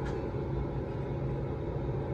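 Steady low machine hum from running broiler and kitchen equipment, with a faint steady whine above it.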